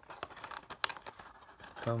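A cardboard toy box being handled: a few light clicks and rustles as its top flap is held open and fingers work inside, with one sharper snap about a second in.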